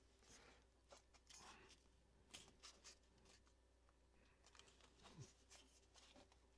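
Near silence with faint, scattered clicks and rustles of a 3D-printed nylon camera case being handled as its top panel is worked off.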